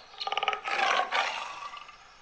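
Tiger roar sound effect: a short rattling growl, then a breathy roar that fades away.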